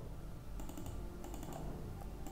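Several faint, light clicks at a computer as checkboxes in a software dialog are ticked, over a low steady hum.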